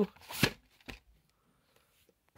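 Plastic VHS clamshell case being handled: a short rustling scrape about half a second in, then a faint click near one second.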